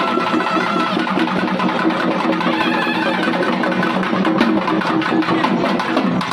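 Tamil folk festival music: a double-headed drum beating quick, steady strokes under a wind instrument holding long, steady notes.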